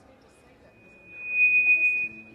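A single high-pitched steady tone that swells up about a second in, holds loud with a slight waver, and cuts off abruptly.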